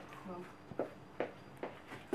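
A spoon stirring thick rye sourdough dough in a plastic container, giving a few short knocks against its sides.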